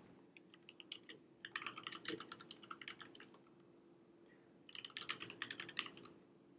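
Faint typing on a computer keyboard: quick runs of keystrokes in three bursts, with a lull of about a second before the last burst.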